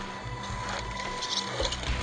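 A radio-controlled Tamiya CC-01 truck's brushed Axial 55T electric motor and gearbox whirring as it drives close past, over background music.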